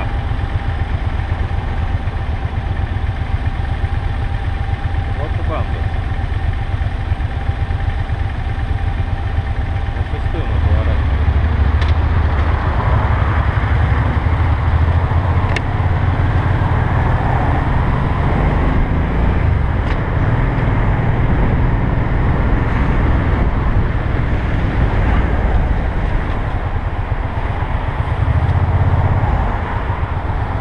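Motorcycle engine running at low revs while the bike waits in traffic, then getting louder from about ten seconds in as the bike pulls away and rides on, its pitch rising and falling, with wind and road noise.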